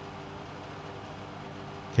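Steady room background: a low, even hum with faint hiss.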